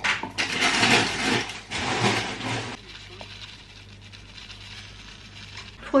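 A thick berry-banana smoothie poured from a blender jar into a drinking glass, the pour lasting about three seconds. After it only a low steady hum remains.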